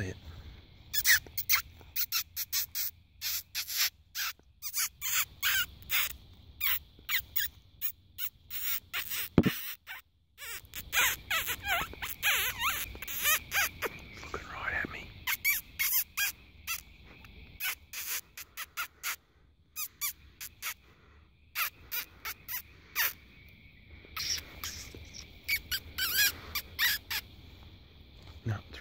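A person squeaking with the lips to call in a fox: fast runs of short, high squeaks with pauses between them. There is a single thump about nine seconds in.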